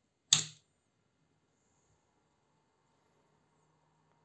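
A single sharp click about a third of a second in, as the power source is switched and the small relay on the prototype board changes over between the primary supply and the backup battery.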